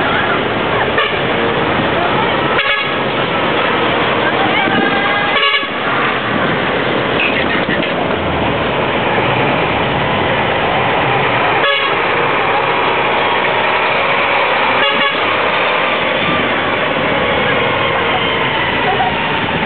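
A decorated show truck (dekotora) driving slowly past with its engine running and its horn sounding, over the chatter of onlookers.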